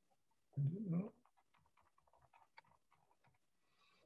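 A short hummed "mm-hmm" about half a second in, then faint, irregular clicking for about two seconds, typical of typing on a computer keyboard over a video call.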